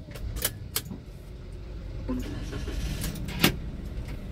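Low rumble inside a car's cabin as it creeps along in traffic, with a few sharp clicks, the loudest near the end.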